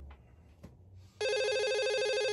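A telephone starts ringing suddenly about a second in: a steady, trilling electronic ring.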